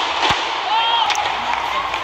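Badminton doubles rally: a sharp racket-on-shuttlecock hit about a third of a second in and another just after the middle, with short shoe squeaks on the court floor between them, over a steady arena crowd murmur.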